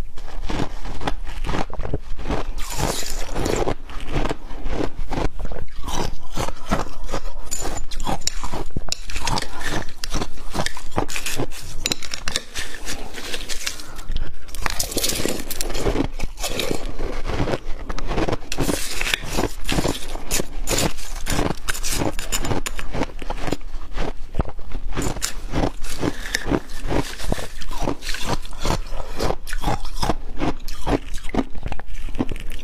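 Crushed ice being scooped with a metal spoon from a glass bowl and crunched in the mouth: a steady run of close, sharp crackles and scrapes.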